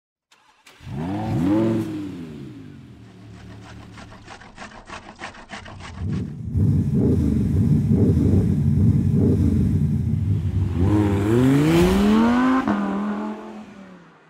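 Car engine starting and revving: a quick rising rev about a second in that drops back to idle, then louder revving from about six seconds with another climbing rev near the end. A rapid ticking sounds over the idle from about three to six seconds.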